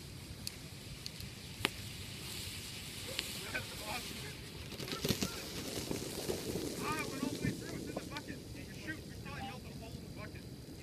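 Thermite burning a short way off: a hiss with scattered sharp crackles and pops as it throws sparks.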